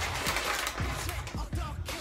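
Background music with a steady, deep beat, about two low thuds a second.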